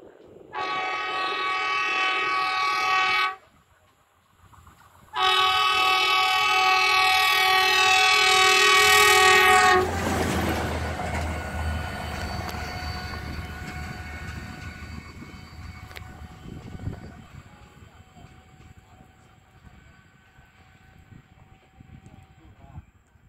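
Horn of a DIC-40 overhead-line maintenance rail vehicle sounding two long, loud blasts, the second longer, at about four and a half seconds. The vehicle then rumbles past on the rails and fades into the distance.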